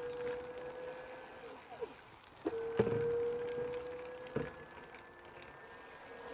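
Muddyfox Electric Avenue e-bike's motor whining at a steady pitch as its pedal-assist cuts in with the rear wheel lifted and pedalled. It drives twice, each time for about two seconds and then fading as the wheel spins down, with a few sharp clicks from the drivetrain.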